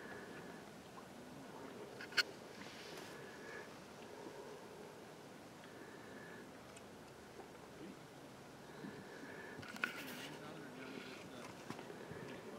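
Quiet lakeside ambience with a faint steady hiss, a sharp click about two seconds in and another near the end.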